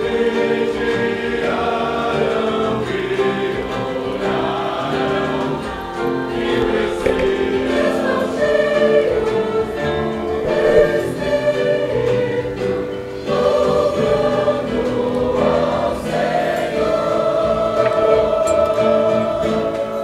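Congregation singing a worship hymn together, accompanied by a live church band of violins, guitars and keyboard.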